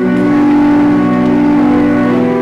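Hymn music: instrumental accompaniment of long, steadily held chords, moving to a new chord just after the start.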